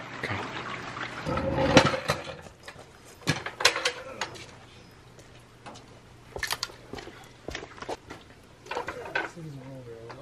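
Heavy rain falling, with scattered knocks and clinks of metal as a steel floor jack and jack stands are handled, and a louder rustling stretch about a second or two in. A faint steady low hum runs underneath.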